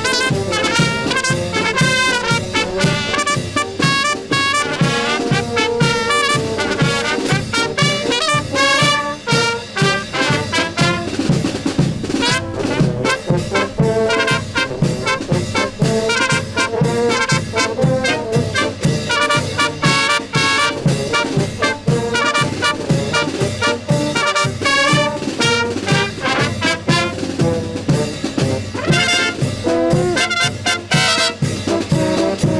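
Brass band of trumpets, tubas and baritone horns with hand cymbals playing a dance tune over a steady, even beat in the low brass.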